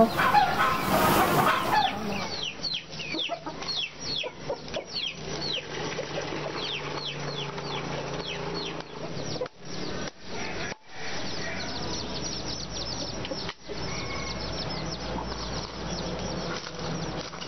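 Chickens cheeping: many short, high chirps, each falling in pitch, come several a second, broken by a few brief drop-outs.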